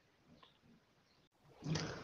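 A pause in a man's speech: near silence, then about one and a half seconds in his voice starts up again.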